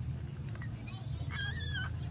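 A newborn puppy gives one short, high-pitched squeak a little over a second in, as it nurses. A steady low hum runs underneath.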